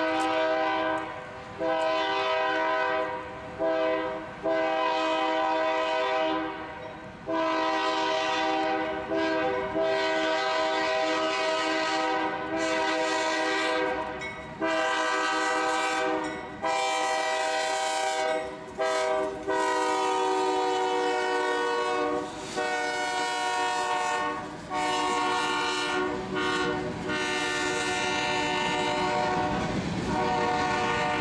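Diesel freight locomotive's multi-chime air horn sounded for a grade crossing, in a long run of long blasts with short breaks. The horn's pitch drops slightly about two-thirds of the way through as the locomotive passes. Near the end, the low rumble of the passing train grows under the horn.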